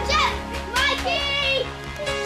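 Children shouting and squealing as they play, over background music with steady held notes.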